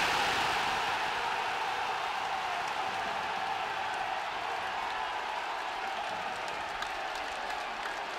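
Stadium crowd cheering and applauding a home goal, loudest as the ball goes in and then holding steady.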